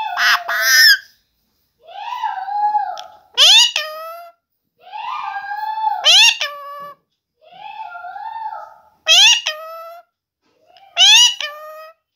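Rose-ringed parakeet calling over and over in pairs, about every two and a half seconds: a drawn-out wavering call, then a short, sharp rising screech, which is the loudest part.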